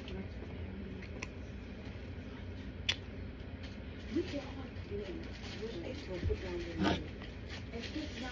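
Someone chewing a mouthful of dry cornstarch, with soft mouth sounds and a few sharp clicks, the loudest about three seconds in. Children's voices are faintly heard in the background.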